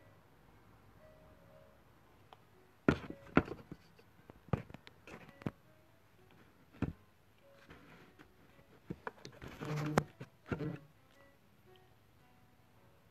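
Handling noise on a phone's microphone: a string of sharp knocks, taps and rustles while the phone is moved and adjusted, starting about three seconds in and ending near eleven seconds. Faint background music runs underneath.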